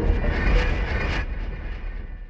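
Closing whoosh of a logo sting: a noisy wash with deep bass and a shimmering top, gradually fading away over the second half.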